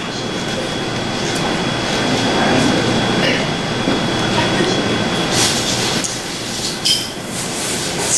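Audience applauding, swelling over the first couple of seconds and easing off in the last two.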